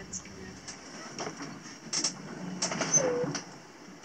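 A person's short murmured hum with a falling pitch about three seconds in, among scattered light knocks and creaks of a sailing yacht's cabin.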